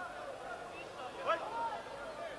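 Indistinct, overlapping voices of spectators at a kickboxing match, with one louder shout about a second in.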